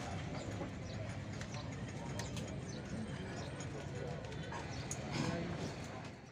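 Steady background noise with people's voices and scattered light clicks, a little louder about five seconds in; no distinct engine or exhaust sound stands out.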